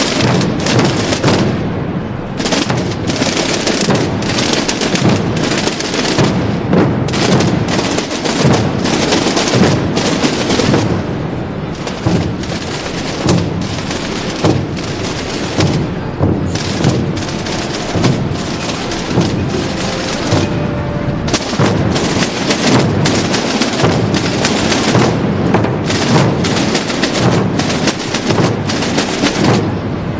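A Holy Week procession drum corps, dozens of drums played together in a dense, unbroken roll of strikes with no steady beat.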